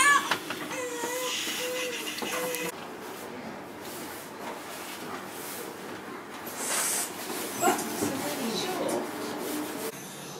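Indistinct recorded voices with a wavering, wailing cry in the first few seconds, then quieter murmuring voices.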